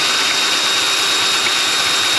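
Electric drill running at a steady speed with a high whine, its bit boring a new mounting hole through a steel muffler bracket.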